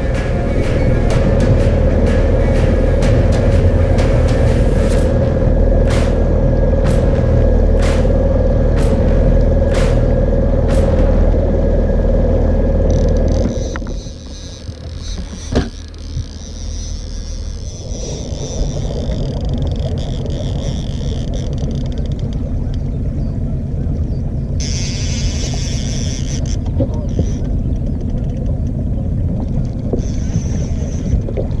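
Outboard boat motor running steadily under background music with a regular tick; about halfway through the music and the loud drone drop away. What is left is the motor running lower with wind and water on the boat, a single knock, and a brief high hiss a few seconds before the end.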